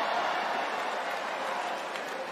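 Audience laughing together after a punchline, a steady wash of crowd laughter with no single voice standing out.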